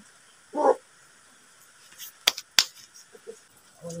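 A single short animal call about half a second in, then two sharp clicks about a third of a second apart a little past two seconds.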